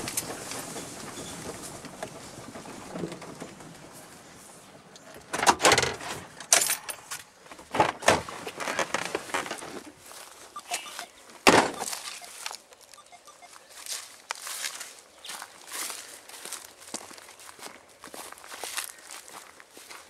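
Vehicle running for the first few seconds, then a few sharp knocks and clunks from a vehicle door as someone gets out, the loudest about eleven seconds in. After that come scattered light steps and rustles through grass.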